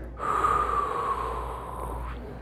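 A man's long, slow breath out through the nose, lasting nearly two seconds, with a faint whistling tone that sinks slightly in pitch. He is collecting himself after a chiropractic adjustment.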